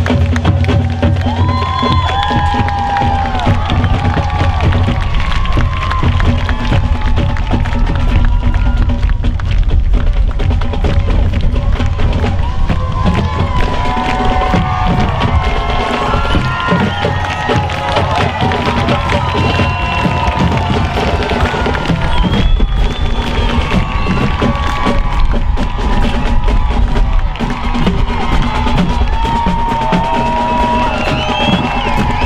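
A high-school marching band playing with drums while a crowd cheers and shouts.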